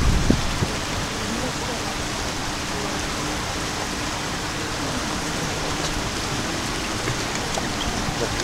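Steady rush of shallow river water spilling over a low weir in a concrete channel.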